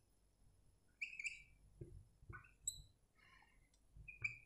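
Faint squeaks of a marker pen writing on a whiteboard: a handful of short, high squeaks starting about a second in.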